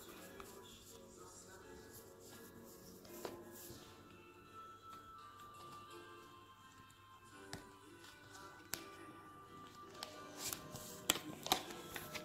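Faint background music of slow, held notes. A few light clicks of tarot cards being handled near the end.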